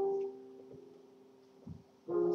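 Piano playing slowly: a chord struck at the start rings on and fades away, with a soft knock near the end.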